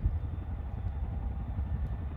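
A helicopter running up for takeoff at a nearby airport, heard as a steady low rumble with a faint, thin, high whine above it.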